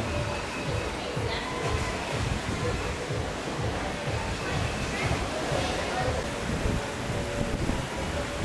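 Wind buffeting the microphone over a steady wash of sea water, with faint voices in the background.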